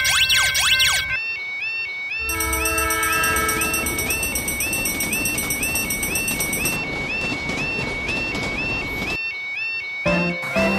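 Cartoon level-crossing alarm chirping about twice a second, with a train horn sounding for about two seconds and the rumble of a passing train that cuts off suddenly near the end. A rapid sweeping electronic tone is heard for the first second.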